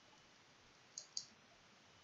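Two quick computer keyboard keystrokes, about a fifth of a second apart, in near silence: spaces being typed into the code.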